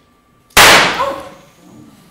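A single stage gunshot about half a second in, very loud and sharp, ringing off through the theatre for about a second.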